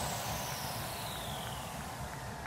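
An edited transition sound effect: a whooshing noise sweep that falls in pitch and slowly fades out.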